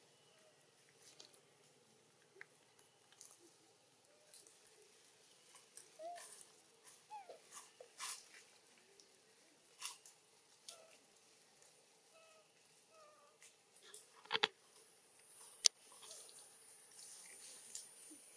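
Faint sounds of long-tailed macaques: a few short, soft squeaks and chirps among scattered small clicks and rustles, with two sharper clicks late on. A high, steady hiss comes in about fifteen seconds in.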